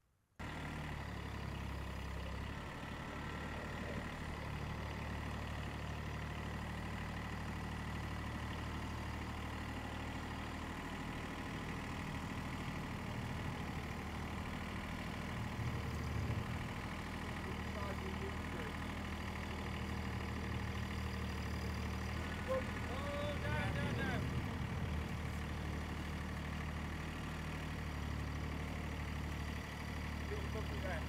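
Compact tractor's diesel engine idling steadily.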